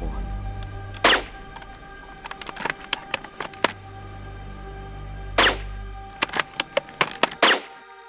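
Two loud rifle shots, one about a second in and one past halfway, with sharper clicks and cracks between them and a quick run of them near the end, over background music with a steady low drone.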